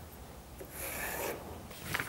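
A soft scraping rub on the plywood router-jig base, lasting under a second about midway, over faint room tone.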